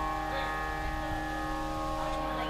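A steady Carnatic music drone: several held tones ringing on without a break.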